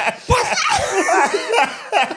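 Several people laughing hard together in quick overlapping bursts, with a dull low thump about a third of a second in.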